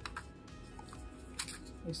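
Cardboard outer sleeve being slid off a smartphone box by hand: quiet rubbing with two short scrapes, a small one near the start and a sharper one about halfway through.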